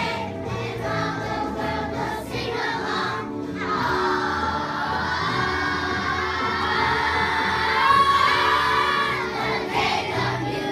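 A children's chorus singing over backing music; from about four seconds in, the children hold one long loud note for about six seconds, the pitch lifting near the end.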